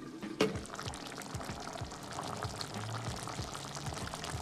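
Tomato sauce with sliced sausages bubbling at a simmer in a pot, a steady fine crackle of bursting bubbles. A single clink of the glass pot lid being handled about half a second in is the loudest sound.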